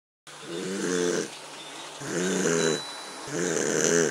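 Cartoon snoring sound effect: three snores about a second and a half apart, each swelling for about a second before it stops.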